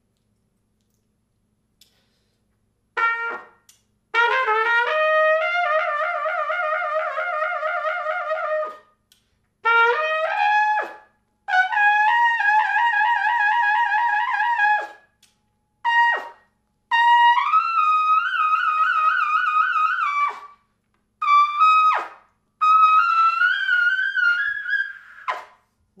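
Kanstul-made French Besson Meha large-bore trumpet playing lip trills, starting about three seconds in: four fast wavering trills, each held a few seconds and each pitched higher than the last, climbing toward the high register, with short notes between them.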